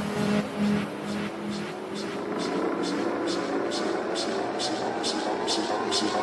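Psytrance breakdown building up: a synth tone rising steadily in pitch over short hi-hat ticks a little over twice a second, with no bass drum.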